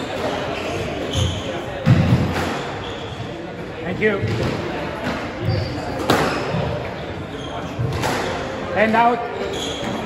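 Squash ball being struck and hitting the court walls during a rally, heard as a series of dull thuds and sharper knocks a second or two apart, ringing in a large hall.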